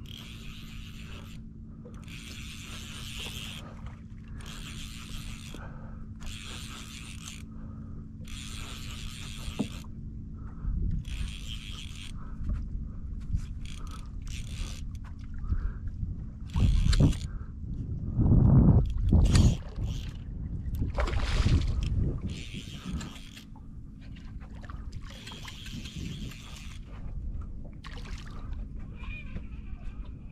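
Sounds aboard a small fishing skiff on open water: a steady low hum runs under repeated short hissing sounds, each about a second long, with a few loud low rumbles about two-thirds of the way through.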